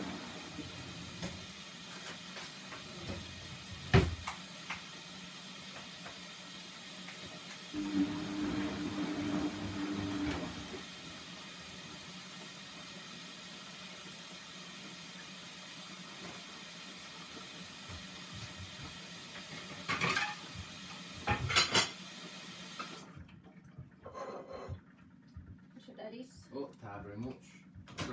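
Cups and cutlery clinking over a steady background hiss and hum, with one sharp clink about four seconds in and a few more clinks around twenty seconds. The background hiss cuts off suddenly near the end.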